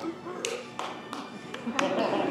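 Footsteps on a hard stage floor: four sharp taps of a graduate's shoes, irregularly spaced about half a second apart, with a soft hall background underneath.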